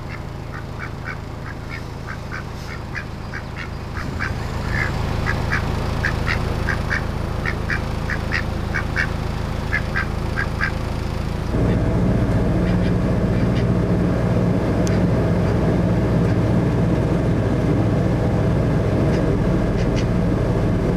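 A white domestic duck quacking in a quick series of short quacks, about two or three a second, for the first ten seconds or so, over the steady low running of a narrowboat's engine. About eleven and a half seconds in, the engine suddenly gets louder and runs on steadily.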